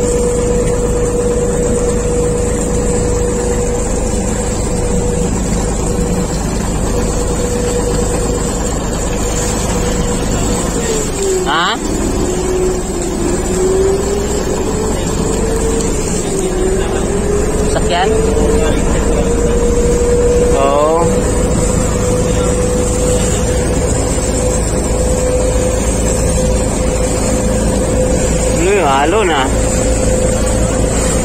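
A small passenger boat's engine runs under way with a steady drone over rushing water. About a third of the way in the engine note drops as it slows, then climbs back to its steady pitch over several seconds.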